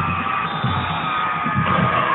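Football stadium crowd noise with music playing from the stands, a long held note sliding slightly lower near the end.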